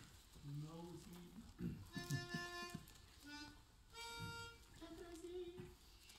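Quiet pause with a few faint, short held notes and soft humming as an a cappella men's choir takes its starting pitch; the clearest notes come about two seconds in and again about four seconds in.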